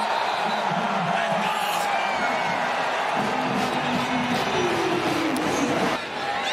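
Stadium crowd cheering a home-team touchdown, with band music playing a run of held low notes over the crowd noise.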